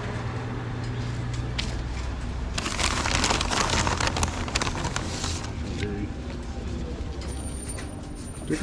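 Paper bag rustling and crinkling for a few seconds in the middle, over the low steady hum of a motorcycle engine idling.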